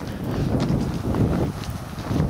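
Wind buffeting the microphone in an irregular low rumble.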